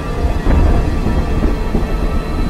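Thunder rumbling with rain over a dark, sustained music drone; the rumble swells sharply about half a second in.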